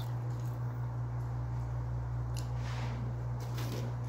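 A steady low hum throughout, with faint brief rustles of food being handled at the table about halfway through and near the end.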